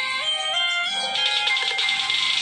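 Background music: an electronic melody moving through a few held notes, with a light beat in the second half.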